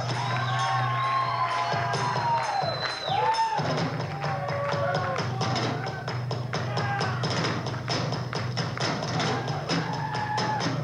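Live rock drum kit solo: drums and cymbals struck in a flowing pattern, the strokes growing faster and denser after about four seconds, over a steady low sustained note.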